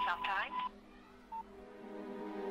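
Telephone beep tones over soft sustained background music. A steady beep of about half a second fades out, and a single short beep follows about a second into the clip, at the tail of a voice at the start.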